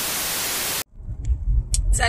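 TV-static sound effect: a steady, loud hiss that cuts off abruptly a little under a second in. After a short gap comes the low rumble of a car interior.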